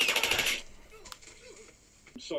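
A short burst of rapid automatic gunfire, mixed with a raised voice, in the first half second, then faint voices.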